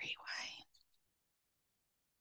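A woman's voice spelling out a name letter by letter, then near silence for the second half.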